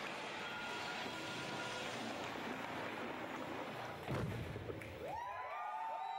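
Playback of a Rube Goldberg machine video's soundtrack through a hall's speakers: a steady rush of noise, a single low thump about four seconds in, then a rising, held pitched tone near the end.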